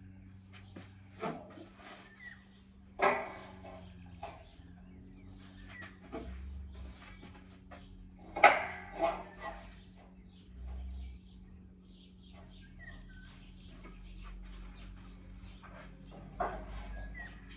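Cut steel pieces being set down on a square steel tube stringer: a handful of sharp metal clanks, the loudest about three seconds in and about eight and a half seconds in. A steady low hum runs underneath, with a few faint bird chirps.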